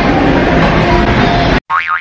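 Busy restaurant background noise that cuts off abruptly about one and a half seconds in, followed by a warbling, wobbling 'boing' sound effect.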